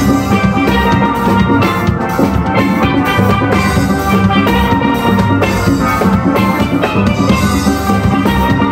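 Steel band playing live: many steel pans struck together in a continuous, rhythmic piece of music.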